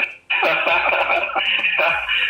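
Two men laughing together over a video call, starting about a third of a second in, their voices thin and compressed by the call audio.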